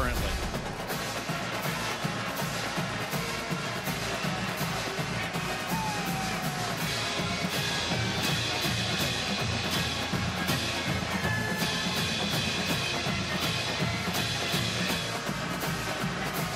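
College marching band playing in the stands, with a steady drum-and-cymbal beat throughout and sustained horn lines coming in about halfway through.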